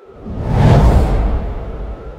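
Whoosh transition sound effect for an animated title, with a deep low rumble. It swells up to a peak about a second in, then fades away.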